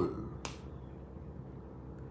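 A man's word trailing off, then a pause with a single short, sharp click about half a second in, over a faint steady electrical hum.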